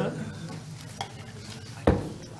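Handling noise in a meeting room: a light click about halfway through and a sharp knock near the end, over a faint low room hum.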